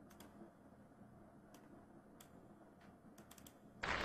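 About half a dozen faint, scattered clicks of a computer keyboard and mouse in use, over quiet room tone.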